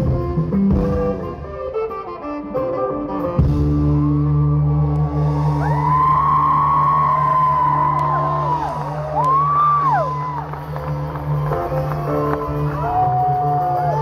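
Live band playing an instrumental passage with no singing: a held low chord under a lead line that slides up and down in pitch, with saxophone and acoustic guitar in the band.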